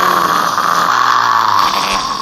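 A child growling like a monster: one long, loud growl held steady.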